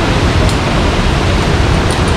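Steady, loud rushing roar of a large waterfall, Montmorency Falls, close by.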